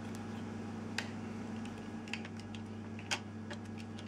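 Small, sparse clicks and ticks of a screwdriver turning a screw through a plastic trail-camera backing plate into the camera body, the sharpest about a second in and about three seconds in, over a steady low hum.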